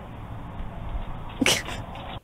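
Steady hiss of outdoor noise from a doorbell camera's microphone. About a second and a half in, a single short, sharp burst like a sneeze cuts through it and is the loudest sound.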